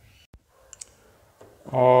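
A few faint, sharp clicks of a plastic PET honey jar being handled, then a man starts speaking near the end.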